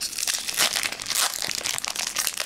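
Foil wrapper of a Pokémon trading card booster pack crinkling and crackling in the hands as it is worked open.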